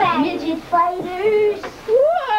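Children's high-pitched voices crying out in drawn-out calls and exclamations, one pitch held for about half a second near the end.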